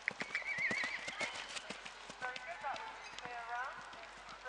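A horse's hooves land and canter on grass turf just after a fence jump, a rapid run of thuds that is strongest in the first two seconds. A high wavering call is heard during the first second, and pitched voices come in during the second half.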